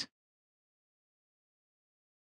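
Near silence: a dead-quiet gap with no audible sound after a word ends.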